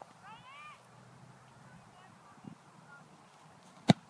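A kicker's foot striking a football off a kicking tee: one sharp, loud thud just before the end, as the field goal attempt is kicked.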